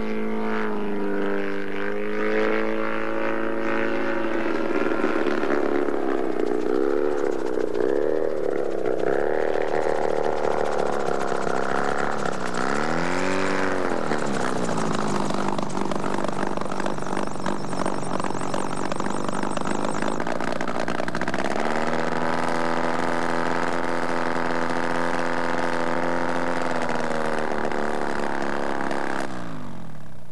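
Wallis autogyro's engine and pusher propeller running, the pitch swinging up and down repeatedly as it flies and throttles through the first half, then holding a steady pitch before cutting off just before the end.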